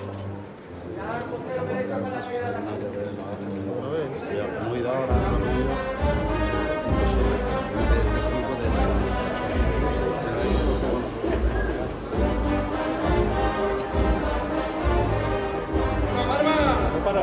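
A procession band of brass and drums playing a slow processional march. A melody sounds first, and heavy bass-drum beats come in about five seconds in, roughly one a second.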